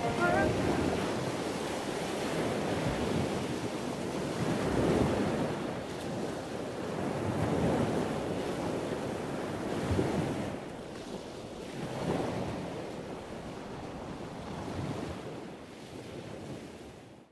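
Ocean surf: waves washing onto a beach, the rush swelling and easing every two to three seconds, with some wind. It fades near the end.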